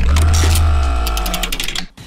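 A musical transition stinger: a sudden deep bass hit with held tones over it and a rapid run of ticks, fading out after a little under two seconds.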